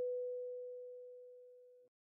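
A single kalimba note, B4, ringing on and fading away, then stopping just before the end.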